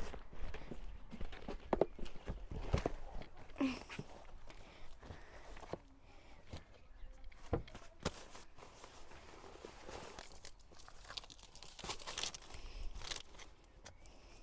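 A few footsteps on concrete in the first seconds, then light, irregular rustles and knocks as fabric gear and horse boots are handled and packed into a car's boot.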